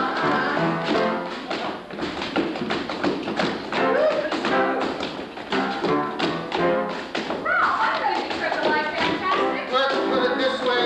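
Musical theatre accompaniment playing a lively number, with the dancers' feet tapping and stamping on the stage floor in rhythm with it.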